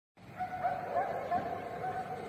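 Short repeated calls from an animal, a few a second, each a brief note that slides upward, over a low hiss of open-air noise.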